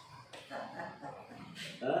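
Mostly speech: faint voices in the room, then a man says a short "haan" near the end.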